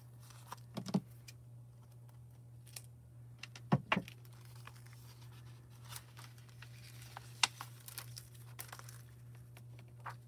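Thin sheet of hot-foil transfer foil crinkling as it is handled and folded, with a few sharper crackles about a second in, near four seconds and past seven seconds. A low steady hum lies underneath.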